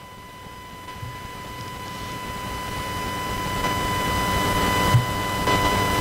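Steady high electrical whine with hiss, growing gradually louder through the pause, with one soft low knock about five seconds in.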